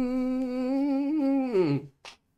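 A man humming one long note through closed lips, the pitch held steady and then sliding down as it stops near the end.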